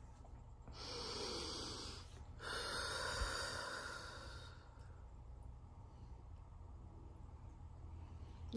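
A person breathing deeply close to the microphone: two long, airy breaths, the second longer and fading out.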